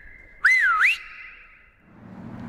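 A person whistling one short swooping note about half a second in: it dips in pitch, then rises. The last pitch hangs on and fades over about a second, echoing back and forth between the high parallel walls of a narrow street.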